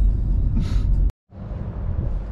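Low, steady road and engine rumble inside a 2005 Honda CR-V's cabin while driving, with a short breathy exhale from the driver about half a second in. It cuts off abruptly a little past one second, and a quieter low background follows.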